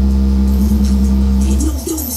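Bass-heavy hip hop music played loud through a Sony SS-VX333 speaker: a long, deep held bass note that ends about a second and a half in, when the higher percussion comes back in.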